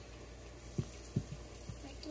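Pancake batter squeezed from a ketchup bottle onto a hot pan: faint sizzling with four short, low squelches in the second half.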